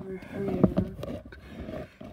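A voice speaking briefly, with several sharp knocks and rubbing noises from the phone being handled and moved close to furniture, most of them about half a second in.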